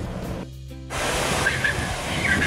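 Soft background music, then about a second in a steady rush of spraying water from the fountain jets of a pool splash-play structure, with faint distant voices.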